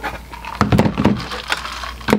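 A person drinking ice water from a glass, with a cluster of short sounds about half a second to a second in.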